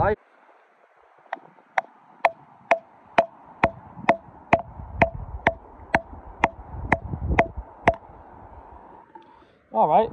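A hammer striking a steel chisel set into a rock nodule about fifteen times at an even pace of roughly two blows a second. Each blow gives a sharp knock with a short metallic ring. The blows are splitting the stone open along a crack to reveal the ammonite inside.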